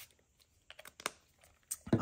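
A few light, scattered clicks and taps from hands handling craft materials on a paper plate at a tabletop, the clearest about a second in.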